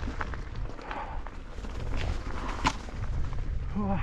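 Mountain bike rolling down a loose, stony singletrack: the tyres crunch over gravel and rocks, and the bike gives off irregular clicks and knocks as it rattles over the stones, over a steady low rumble. The sharpest knock comes just under three seconds in.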